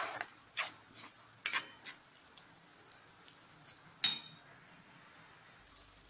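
Metal spatula scraping and clinking against a kadai as peas in a creamy masala are stirred. There are a few strokes in the first two seconds and one sharp clink about four seconds in.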